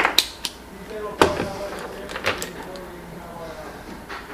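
Handling clatter of a handheld multimeter and its test leads on a wooden workbench: a scatter of sharp clicks and knocks, the loudest about a second in, as the meter is set down and the probes are picked up.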